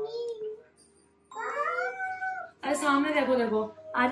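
A high-pitched, wordless call from a young child, drawn out and rising then falling, about halfway through, followed by a woman speaking briefly.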